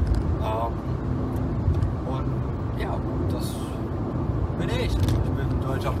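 Car driving, heard from inside the cabin: a steady low engine and road rumble, with a man's voice over it at times.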